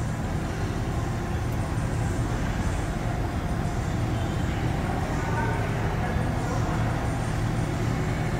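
A steady low mechanical hum with faint voices in the background.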